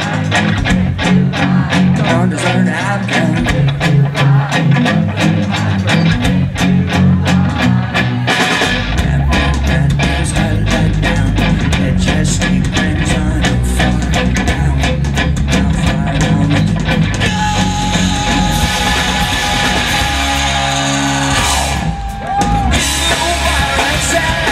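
Live rock band playing: distorted electric guitars and a drum kit with singing over them. The low end fills in about a third of the way through, and there is a short break near the end before the full band comes back in.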